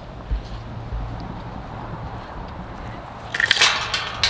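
Wind rumbling on the microphone, then near the end a short burst of metallic clinking and rattling as a metal tube gate is handled.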